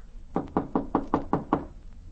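Knocking on a door, a quick run of about eight raps, as a radio-drama sound effect.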